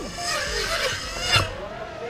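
Several racing quadcopters buzzing past at close range, a dense high whine of motors and propellers that wavers in pitch, dropping away suddenly about one and a half seconds in.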